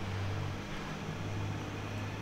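Steady low hum with a faint hiss of background noise, no events standing out.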